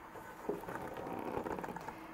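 Faint, irregular crackling and a few light clicks of a cardboard doll box being handled and turned on a tabletop.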